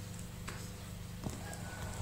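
Low steady electrical hum and light hiss of a quiet recording, with a couple of faint clicks.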